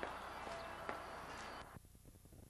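Faint steady background noise with a few light knocks. The noise drops away abruptly near the end.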